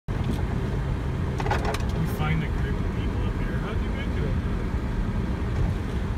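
Steady low engine and drivetrain rumble heard from inside the cabin of a Nissan Xterra crawling along a rough trail. A few sharp clicks and high squeaks come through from about a second and a half in.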